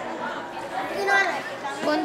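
Indistinct voices talking in the background, with a short voiced phrase about a second in and another starting near the end.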